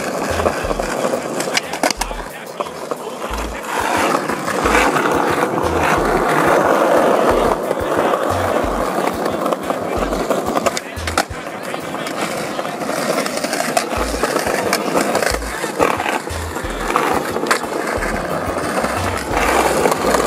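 Skateboard wheels rolling over asphalt: a continuous rumble with scattered sharp clicks as the wheels cross cracks and joints.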